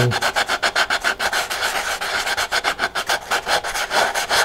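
Sandpaper rubbing back and forth on a small paper transition shroud stiffened with CA glue, in quick, even strokes about nine a second.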